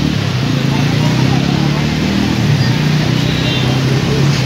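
Street ambience: a steady low motor hum, like a nearby vehicle engine running, under people talking in the background.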